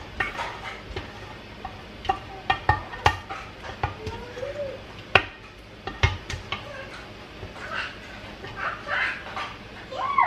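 Irregular clicks and knocks of a spoon scraping thick fruit butter out of a tilted stainless steel pot into a plastic funnel on a glass jar.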